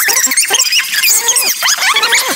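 Cartoon soundtrack played at four times normal speed: voices and background audio pitched up into a rapid stream of high, squeaky chirps and glides.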